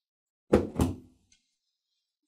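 A stack of hardcover books set down heavily on a table: two thuds about a third of a second apart, about half a second in.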